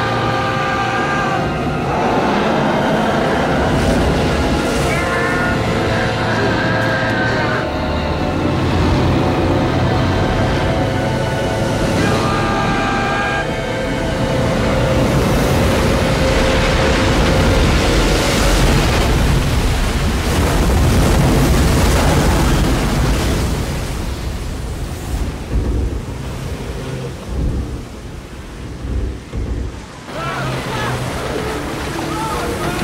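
Orchestral film score with held notes over storm sound effects: wind, rain and a heavy sea, with a deep rumble building to its loudest through the middle. In the last few seconds the music thins and the sound turns uneven as water surges.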